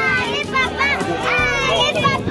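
Voices calling out over background music with a bass line.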